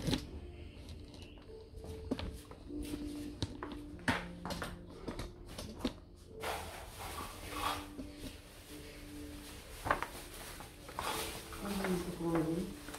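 Scattered light clicks and knocks of small objects being handled and set down on a table, over a quiet room background.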